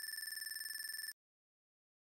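Electronic trilling tone like a telephone ringer: a high steady pitch, rapidly pulsing, lasting about a second and cutting off suddenly.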